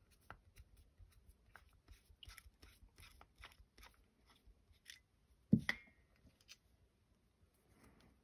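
Screwdriver unscrewing the small brass idle jet from a Honda 200X carburetor: faint repeated ticks and scrapes of metal on metal, then one sharper click with a short metallic ring about five and a half seconds in.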